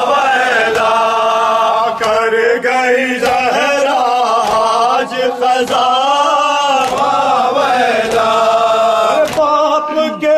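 A group of men chanting a nauha, a Shia lament, in unison into a microphone, the melody held in long wavering lines. Sharp strokes of matam, chest-beating with the open hand, mark the beat about once a second.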